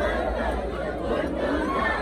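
Concert crowd shouting and calling out, many voices overlapping, over a steady low rumble.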